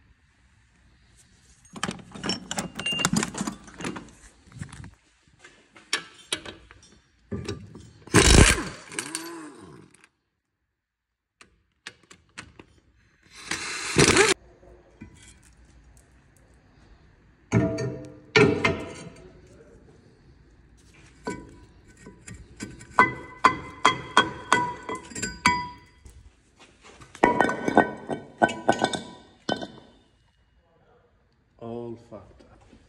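Metal tools and brake parts clanking and knocking during removal of a car's front brake caliper carrier and disc. There is a very loud blow with a ringing tail about eight seconds in, another loud knock near the middle, and quick runs of strikes with a ringing metallic tone near the end.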